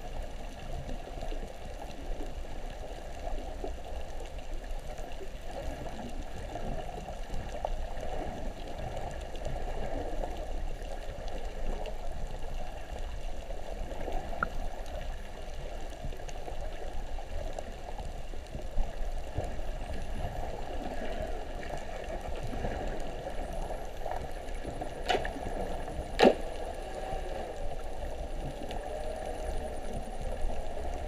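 Muffled underwater water noise heard through a submerged camera housing, with two sharp clicks about a second apart near the end.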